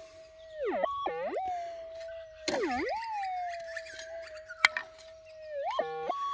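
Minelab GPZ 7000 gold detector's audio: a steady threshold hum, broken three times by swooping target signals that dip low and then climb to a higher tone. The signals come as clumps of clay holding a small gold nugget are passed over the coil; the prospector calls it "really good".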